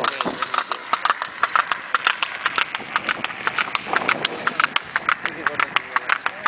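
Cart horse's hooves clip-clopping on the road as it pulls the cart, an even run of several sharp hoof strikes a second.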